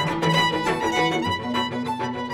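Fiddle music: a bowed fiddle playing a quick run of notes.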